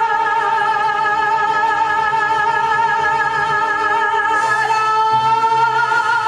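A singer holding one long note with vibrato over backing music, moving to a slightly higher held note about four and a half seconds in.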